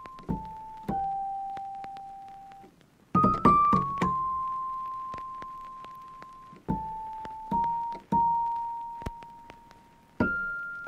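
Slow background music of soft piano-like keyboard notes, each struck and left to ring out, with a quick run of several notes about three seconds in.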